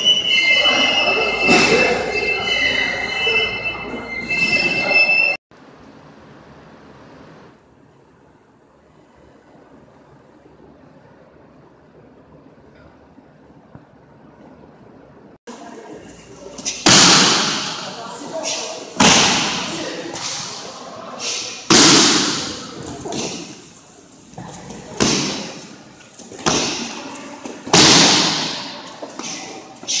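Punches and kicks landing on a handheld kick shield in an echoing gym: from about halfway through, a dozen or so hard smacks come roughly one a second, each followed by a short echo. Before that, a steady high squeal fills the first five seconds and gives way to a quiet stretch.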